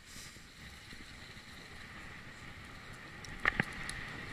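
Steady rush of wind and rolling noise from a moving bicycle, with a couple of sharp clatters about three and a half seconds in.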